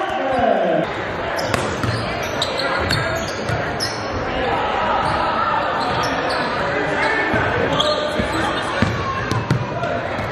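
Basketball game in a large gym: a ball bouncing on the hardwood and short high squeaks over a constant din of crowd voices echoing in the hall.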